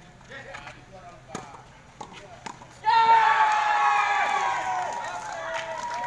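A few sharp tennis racket strikes on the ball. About three seconds in, a loud, drawn-out shout of several voices cheering starts suddenly and slowly falls in pitch as the match-winning point is taken.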